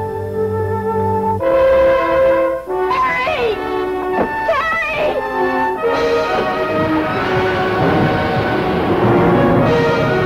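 Dramatic orchestral film score led by brass: held chords change every second or so, then swell into a louder full-orchestra passage about six seconds in.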